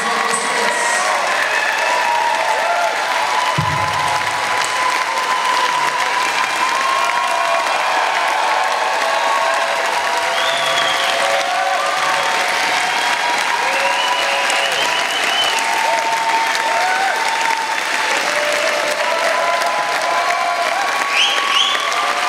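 Audience applauding steadily, with shouts and whoops over the clapping and a single low thud about three and a half seconds in.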